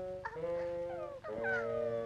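Cartoon orchestral score holding sustained chords, with several short, falling, wailing slides laid over them, like sobbing or whimpering.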